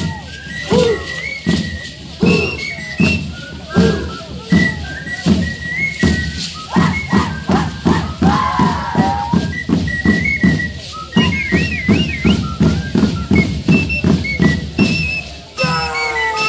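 Live Shacshas dance music with the dancers' seed-pod leg rattles (shacapas) crashing in time with their stamping, about two to three beats a second. Short high whistles sound over it, with a wavering whistled trill past the middle, and a few shouts.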